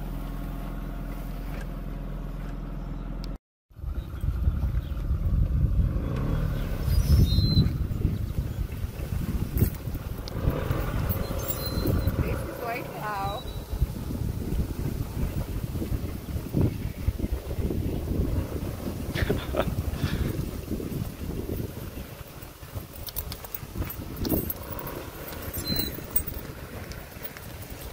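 Nissan March hatchback's small four-cylinder engine idling steadily, then, after a cut a few seconds in, running rougher with the level rising and falling as the car is worked through tall grass.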